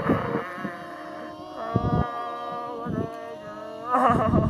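Mournful a cappella vocal music: voices holding long notes, with short louder surges of a wavering voice line.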